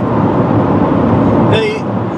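Steady road and engine rumble inside a moving car's cabin, with a brief voice near the end.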